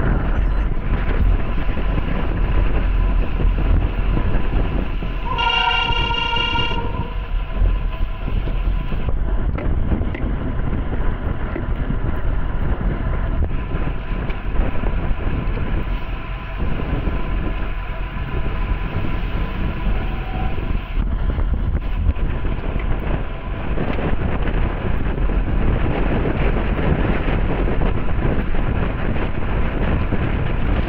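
Wind buffeting the microphone of a camera on a bicycle moving at race speed. About five seconds in, a horn sounds once for about a second and a half.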